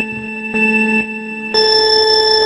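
Electronic race-start countdown beeps: steady tones about a second apart, then a higher-pitched 'go' beep about one and a half seconds in.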